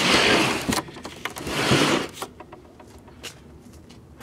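Vintage Philco television cabinet scraping twice as it is shifted and turned on concrete, each scrape lasting under a second, followed by a few light knocks.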